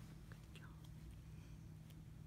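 Near silence over a low steady hum, with a few faint soft clicks from a small curly-coated dog nibbling at a hand.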